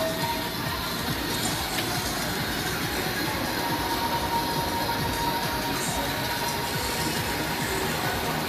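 Funfair noise: a dense, steady mechanical rumble of rides mixed with fairground music, with a thin high whine held for about two seconds in the middle.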